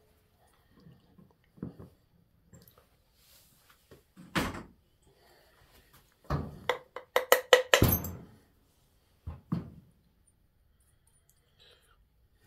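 A mallet striking a Garrett T3 turbocharger's aluminium compressor housing to knock it loose from the center section. There is one blow about four seconds in, a quick run of about seven blows between six and eight seconds with a short metallic ring, and two more near nine and a half seconds, with light clinks of parts in between.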